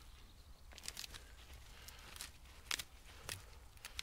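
Faint rustling, with a few short, sharp crackles and snaps scattered through, as gloved hands pull Jerusalem artichoke tubers and roots out of loose compost. A low rumble runs underneath.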